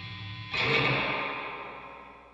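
The closing chord of a rock song: a distorted electric guitar chord struck about half a second in, then ringing and fading away.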